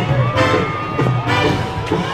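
Parade music playing, with a crowd of spectators cheering.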